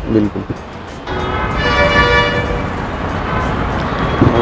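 Marinated chicken wing pieces deep-frying in hot oil in an iron kadai: a steady sizzling starts about a second in as they go into the oil. A held musical tone sounds over the sizzle in the middle.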